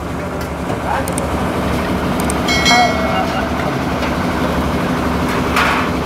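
Busy restaurant-counter din: steady background chatter of a crowd with a low hum. A brief metallic ring, like a steel plate or utensil, sounds about two and a half seconds in, and there is a short clatter near the end.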